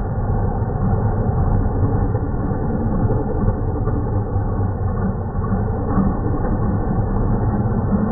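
Mazda RX-7 (FC) drag car's engine idling with a steady low rumble as the car creeps forward under its own power.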